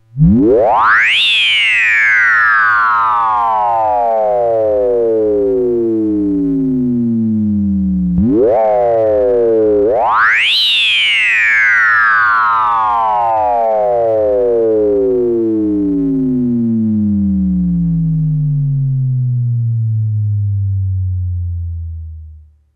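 Minimoog synthesizer playing the 'Vree Oo Bleep-Bleep' patch with one key held down. A quick rising sweep gives way to a slow falling glide lasting about seven seconds, followed by a short blip about eight seconds in. Then comes a second quick rise and a long fall that fades out near the end.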